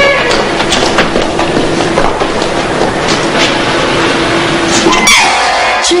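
A train running on the track overhead, a steady clattering rumble with a held tone that cuts off sharply about five seconds in, where a cough follows.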